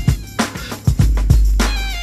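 Instrumental intro of an early-1990s East Coast hip hop track: a drum beat with a deep bass line. Near the end comes a short pitched sample phrase of falling notes, the one that loops through the beat.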